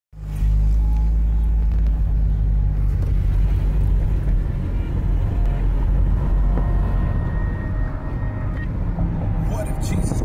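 Inside a moving car: steady low road rumble mixed with the bass-heavy intro of a rap track playing on the car stereo, with an indistinct voice in it.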